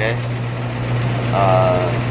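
A steady low machine hum with a man's voice over it, a short word at the start and a brief voiced sound in the second half.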